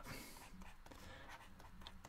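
Faint scratches and light taps of pen strokes writing on a surface, barely above near silence.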